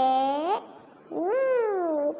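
A child's voice slowly sounding out Arabic letters, each stretched into one long sing-song syllable. The first, ب (b), ends on a rise in pitch; about a second later comes و (w), which rises and then falls.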